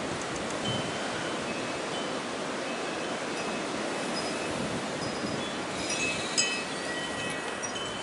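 Steady wind noise and hiss picked up by a compact camera's built-in microphone. Faint high chime tones ring now and then, with more of them about six seconds in.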